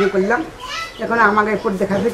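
Speech only: an elderly woman talking, with a short pause about halfway through.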